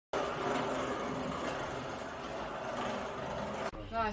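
Steady outdoor street ambience dominated by road traffic noise, cutting off abruptly near the end.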